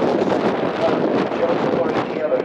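Wind buffeting the microphone over indistinct voices.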